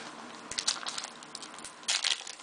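Topps Allen & Ginter trading cards flipped through by hand: short papery flicks and rustles, a few scattered ones about half a second in and a louder cluster near the end.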